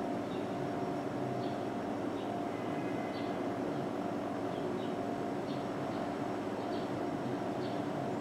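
Steady background hum of room tone, made of several even tones, with a few faint light ticks scattered through it.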